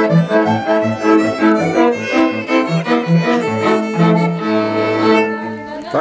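A Slovak folk band playing a lively regional tune on fiddles and a heligonka (diatonic button accordion) over a stepping bass line. The tune ends a little after five seconds in.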